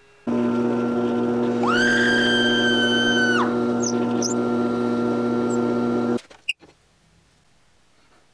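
Drill press motor running with a steady hum while the bit bores into a plastic toy figure. For about two seconds in the middle a high squeal rises and holds as the bit cuts. The sound stops abruptly about six seconds in, followed by a single click.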